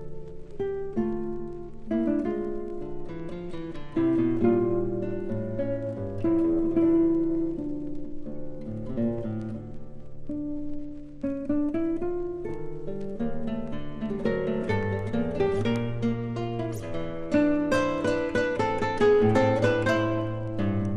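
Two classical guitars playing a duet: a continuous stream of plucked notes and chords that grows busier and louder near the end.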